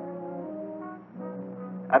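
Orchestral background score with held brass notes, French horn-like. The chord changes about a second in after a brief dip.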